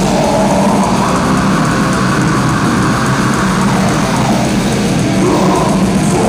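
A heavy metal band playing live, with distorted electric guitars and drums, loud and dense, heard from the audience through a pocket camera's microphone.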